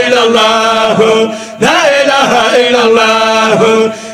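A man's solo voice chanting Sufi zikr devotional poetry, in long held phrases that glide and waver in pitch, with a short breath pause a little after one second in.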